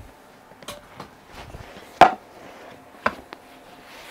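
Sharp clicks and light knocks from the harness buckle and straps of a Joie Bold child car seat being unbuckled and handled: a few separate clicks, the loudest about two seconds in and another about a second later.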